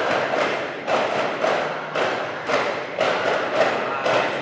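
Duffmuttu ensemble of daf frame drums (wooden-rimmed, skin-headed) beaten together in a steady rhythm, about two strokes a second, with a brief ring after each stroke.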